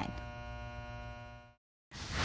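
A steady, buzzy electronic tone with many overtones, fading out over about a second and a half and stopping, with a brief moment of silence after it.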